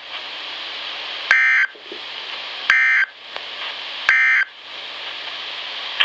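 EAS end-of-message data bursts on NOAA Weather Radio, played through a Midland weather radio's speaker: three short, buzzy digital bursts about a second and a half apart over steady receiver hiss, marking the end of the warning broadcast.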